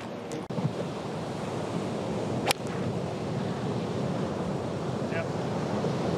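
A golf club striking a ball off the tee once, a single sharp crack about two and a half seconds in, over steady surf and wind noise.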